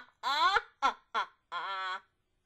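High-pitched laughter trailing into a rising squeal, two short laugh bursts, and a held, wavering vocal sound that cuts off suddenly.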